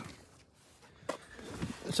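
Quiet handling noise from a hand-held phone camera being moved. There is a click about a second in, then rustling that grows louder, and an intake of breath just before speech.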